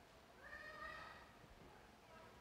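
Near silence, broken about half a second in by one faint, drawn-out voice-like call that lasts about a second.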